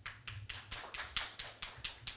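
A quick run of sharp clicks, about five a second, tailing off near the end.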